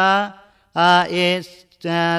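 A Buddhist monk's voice intoning a Sinhala sermon in a chanted preaching style: long drawn-out syllables held at a steady pitch, in three phrases with short pauses between.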